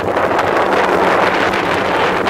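Wind blowing across the camera's microphone: a loud, steady rush of noise.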